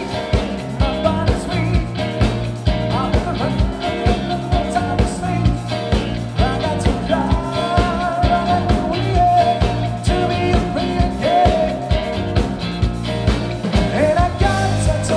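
Live band music: a male vocalist sings into a handheld microphone over a full band with a steady drum beat.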